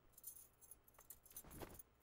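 Near silence, broken by a few faint, brief jingles and rustles of glass bangles and saree cloth as a woman moves her arms, with the most of them near the end.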